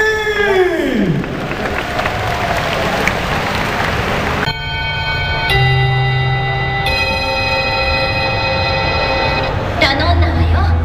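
A pitched, voice-like sound falls away in the first second, then the noise of a crowd in a large hall. About halfway through, an abrupt cut brings in music of long held chords over loudspeakers, changing twice.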